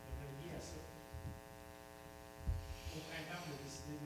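Steady electrical mains hum from the sound system, with faint speech from people away from the microphones and a single low thump about halfway through.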